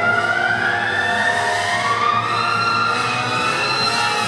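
Short-program music playing over the rink's speakers, with held notes sliding slowly upward.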